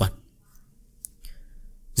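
The last syllable of a man's close-miked speech, then a pause broken by a single short, sharp click about a second in.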